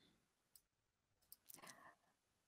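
Near silence from a still-muted video-call microphone, with a few very faint clicks, about half a second in and again near the end.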